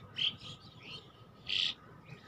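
Small birds chirping: a few short, high chirps, one a little louder about one and a half seconds in.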